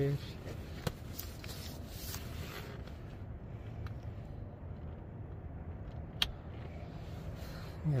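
A couple of sharp clicks, one about a second in and a louder one near the end, with faint rustling over a low, steady background noise.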